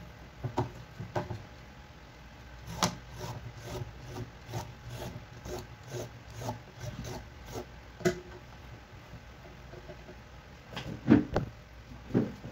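A raw carrot being peeled by hand: a run of short scraping strokes, about two a second, as the skin is stripped off, with a few knocks on the plastic cutting board near the end.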